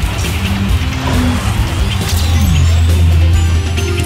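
Opening title theme music of a TV sports programme, a dense produced track with swooshing sweeps. A heavy low bass note swells and is held through the second half.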